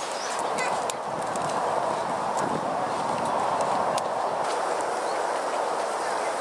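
Outdoor park ambience: a steady murmur, with a few short high chirps and clicks scattered through it.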